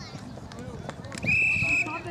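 A referee's whistle blown once, a steady high-pitched blast lasting under a second, starting just over a second in and stopping the play, with faint voices around it.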